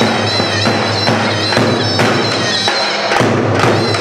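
Live band playing halay dance music: a high, wavering wind-instrument melody over steady, thudding drum beats.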